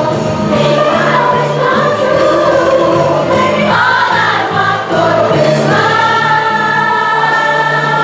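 Children's choir singing with a musical accompaniment of steady low notes, holding one long note in the last couple of seconds.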